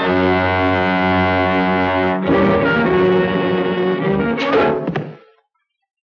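Orchestral cartoon score of held brass chords; the chord changes about two seconds in, swells briefly near the end, then fades out into silence about five seconds in.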